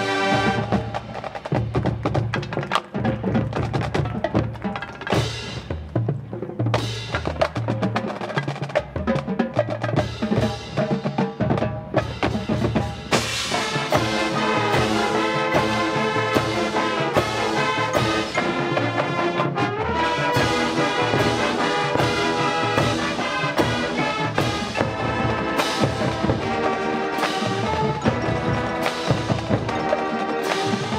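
High school marching band playing its field show: for the first dozen seconds mostly percussion, with drums and mallet keyboards striking out a rhythm, then the full band with brass comes in with sustained chords about halfway through.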